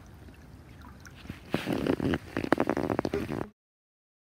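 A person laughing, with sharp clicks, over the faint trickle of a small creek; the sound cuts off abruptly about three and a half seconds in.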